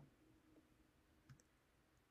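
Near silence between narrated sentences, with one faint short click about 1.3 seconds in.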